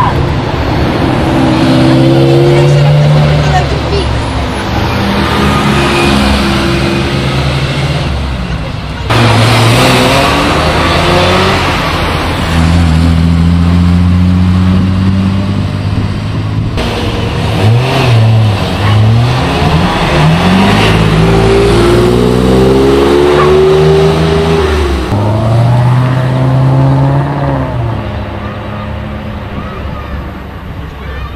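Sports-car engines accelerating and revving hard as they pull away, one car after another, with revs rising and falling through the gears and several quick throttle blips about two-thirds of the way through. The first is a Ferrari 458 Italia's V8.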